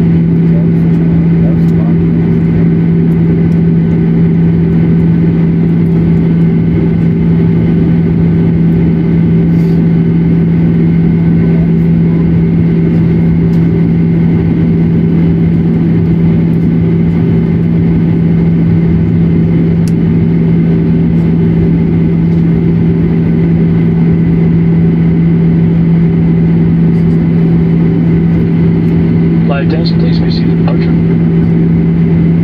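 Boeing 737-900ER's CFM56-7B turbofan engines at low taxi power, heard inside the cabin: a loud, steady drone with a strong low hum.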